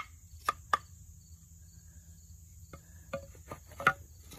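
Bow drill with a mullein spindle on a cedar hearth board: the last few quick strokes of the bow, each a sharp click, stop just under a second in. A few scattered wooden knocks follow near the end as the spindle and board are lifted off and set down on the stone. Insects drone steadily and high-pitched throughout.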